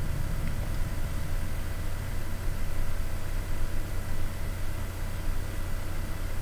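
Steady background room noise: a constant low hum under an even hiss, with no change or separate event.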